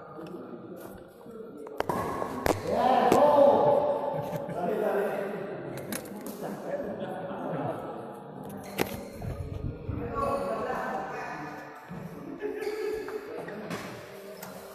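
Indistinct voices in a large hall, with a few separate sharp knocks and thuds at irregular times.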